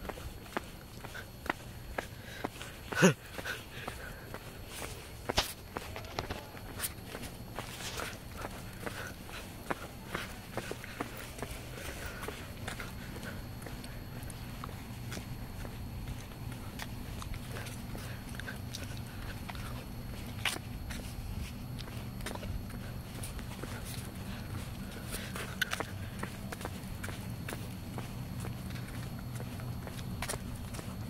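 Footsteps of a person walking on an asphalt path, heard as a string of irregular soft ticks, with one loud sharp sound about three seconds in. A low steady rumble comes up from about halfway.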